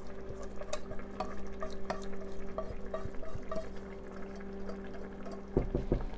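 A silicone spatula scrapes thick cream sauce out of a saucepan and stirs it into a skillet of tortellini, with many small irregular scrapes and taps against the pans. A few louder knocks come near the end, over a steady low hum.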